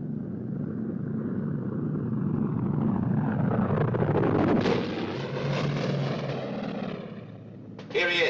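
Piston engines of a three-engined propeller plane, a Junkers Ju 52 trimotor, droning. The drone builds to a peak as the plane passes overhead about halfway through and fades away near the end.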